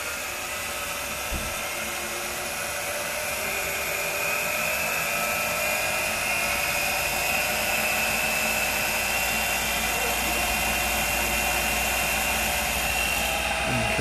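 Ignition test rig's drive motor spinning up to about 3,500 rpm, its whine rising slowly in pitch and loudness over the first several seconds, then running steadily.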